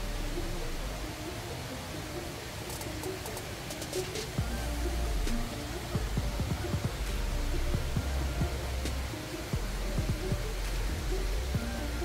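Soft background music over the steady hiss of flowing water from a stream, with a low rumble on the microphone that comes and goes.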